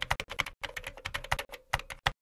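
Computer keyboard typing: a quick run of key clicks, about seven a second, with a brief pause about half a second in. The keystrokes keep time with text being typed out on screen.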